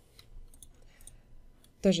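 A few faint clicks of a wireless Logitech computer mouse, spaced irregularly, as objects are selected in a drawing program.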